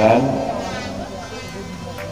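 Indistinct voices of people talking nearby over a low steady hum, just after a spoken word fades out at the start.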